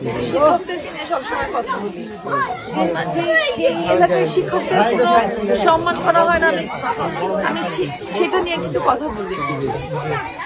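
Several voices talking over one another in close-up chatter.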